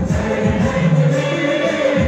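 A large congregation singing a gospel worship song together over amplified music, with held bass notes.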